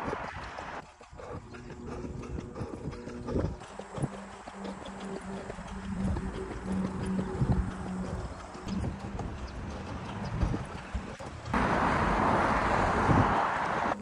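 Running footsteps on a paved path, sped up to double speed so the footfalls come quick and hoof-like. A steady low hum sounds for a few seconds in the middle, and a loud rushing noise lasts about two seconds near the end.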